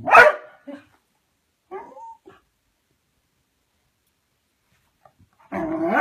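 Dogs barking and growling in play: one loud, sharp bark at the start, a few shorter yaps about two seconds in, then a lull of a few seconds before a longer, drawn-out vocal sound starts near the end.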